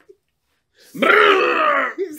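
A person's loud, drawn-out laugh, about a second long, starting about a second in after a moment of dead silence.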